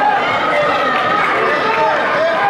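Several voices shouting and calling at once over each other: a football crowd's and players' shouts.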